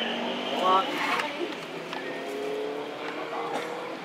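A motor vehicle going past, its engine note falling slowly over about three seconds. A short shout comes just before it starts.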